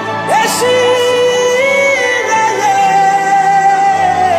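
A woman singing a Ghanaian gospel song over musical accompaniment, holding one long note and then a higher long note.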